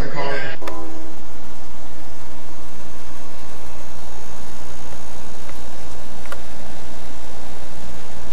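Steady low rumble with an even hiss, with two faint clicks past the middle. It follows the tail of a voice in the first half-second.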